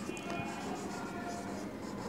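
Felt-tip marker writing on a whiteboard: a string of soft strokes with brief, faint squeaks.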